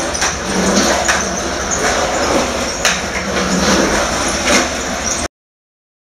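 Skateboard wheels rolling on a concrete floor: a steady rolling noise with a few sharp clicks and knocks. It cuts off to dead silence a little over five seconds in.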